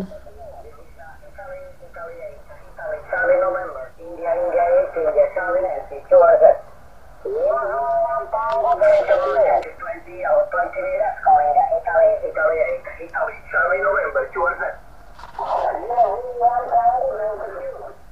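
A distant amateur radio operator's voice on single-sideband from a small HF receiver's speaker on the 20-metre band, thin and narrow-band over a faint hiss. The first few seconds hold only the hiss before the voice comes in.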